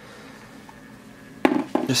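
Quiet room tone, then a single short click about one and a half seconds in, just before a man begins to speak.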